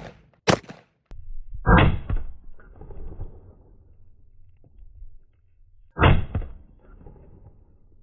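A sharp AR-15 rifle shot about half a second in, the second of two quick shots into a bag of flour. It is followed by two duller, deeper booms with a rumbling tail, about two and six seconds in.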